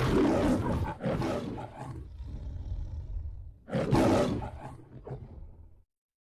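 The MGM logo's lion roar: a lion roaring loudly twice, the second roar about four seconds in, each trailing off, the last fading out just before the end.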